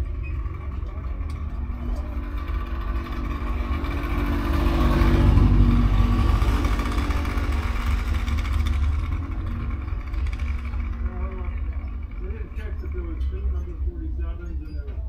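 Vintage race-car engines idling on a starting grid, with one vehicle passing close, swelling louder and fading about five seconds in; faint voices.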